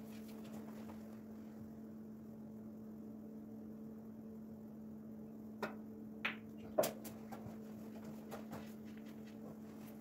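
A snooker cue striking the cue ball: one sharp click about seven seconds in, with a few fainter ball knocks after it, over a steady low hum.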